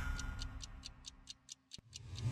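A TV title theme fading out into a ticking-clock sound effect: a run of short, high ticks, about four or five a second, ending in one sharp click near the end.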